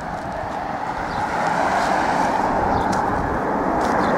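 A car going by on the road, its noise growing louder over the first two seconds or so and then holding steady.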